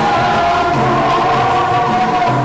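Choir singing with instrumental accompaniment, long held notes over a steady low backing, in the style of gospel music.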